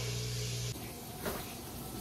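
Quiet kitchen room tone: a low steady hum that cuts off abruptly under a second in, then faint room noise with one small brief knock partway through.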